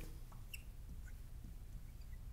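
Faint, short squeaks of a marker writing on a glass light board, a few scattered chirps over a low steady room hum.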